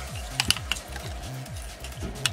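A few sharp plastic clicks about half a second in, as parts of a Transformers Prime Megatron Voyager-class action figure are snapped and locked into place during its transformation. Under them runs background electronic music with a repeating falling bass line.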